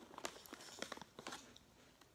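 Gerber Yogurt Melts snack pouch crinkling in the hands, a faint quick run of crackles that dies away after about a second and a half.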